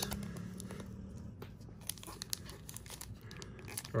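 Foil wrapper of a 1996 Pinnacle baseball card pack crinkling faintly as it is handled and torn open, with scattered small crackles.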